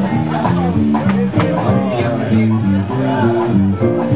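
Live band playing a blues-rock jam: electric guitar and keyboard over a bass line and drums keeping a steady beat.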